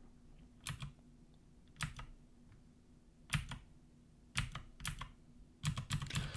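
Computer keyboard keys tapped in short scattered groups, single clicks and small clusters with pauses of about a second between them, a few keystrokes at a time while code is edited.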